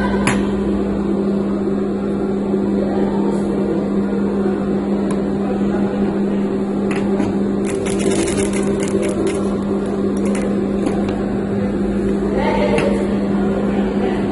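Sewing machine running with a steady motor hum as satin fabric is fed under the presser foot, with crackly rustling of the shiny fabric around eight seconds in and again near the end.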